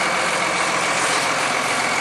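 Dodge Ram pickup's engine idling steadily while it jump-starts a dead Ford F-150.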